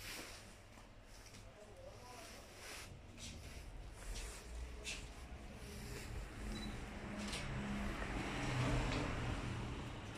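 Footsteps and rustling from someone moving through a fire-damaged room with a phone in hand, with scattered sharp clicks. Underneath runs a low hum, and the rustle grows louder toward the end.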